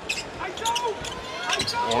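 Basketball being dribbled on a hardwood court, a series of irregular bounces, over arena crowd noise, with a few short high squeaks from sneakers on the floor.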